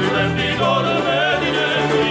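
Live band music: male voices singing a melody with bending, wavering pitch over a panduri (Georgian lute), button accordion and keyboard.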